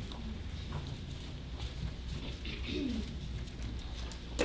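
Soft rustling and light ticks of thin Bible pages being leafed through over a steady low room hum, with one short low sliding sound about three seconds in.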